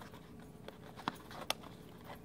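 Faint rustling and crinkling of a folded sheet of paper being shaped by hand into a paper flower, with two small sharp crinkles a little after the middle.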